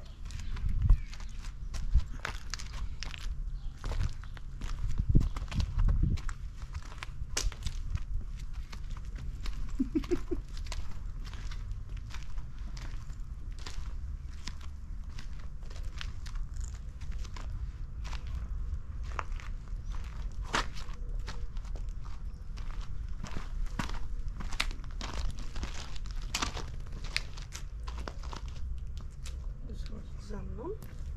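Footsteps on a paved garden path: irregular scuffs and sharp clicks throughout, with a few heavier low thumps in the first six seconds, over a steady low rumble.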